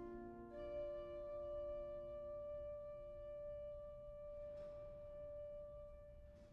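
Sampled pipe organ playing a quiet, slow passage: a lower chord dies away while a single higher note on a soft solo stop enters about half a second in and is held.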